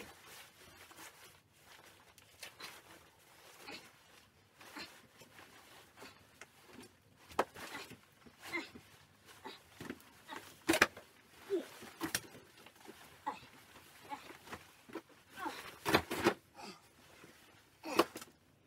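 Bulky clothing rustling and bumping as a person struggles into several layers of jackets and gloves, with scattered knocks, the sharpest about eleven and sixteen seconds in, and a few short grunts of effort.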